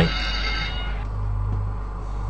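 A short electronic chime of several high tones that rings for about a second and fades, over a steady low hum.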